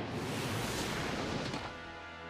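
Anime episode soundtrack: a loud, noisy rush lasting about a second and a half, then music with held notes.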